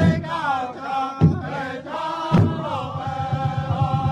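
Powwow drum group singing in chorus over a large hand drum. A few single heavy drum strokes fall in the first half, and then a fast, steady drumbeat starts about two and a half seconds in.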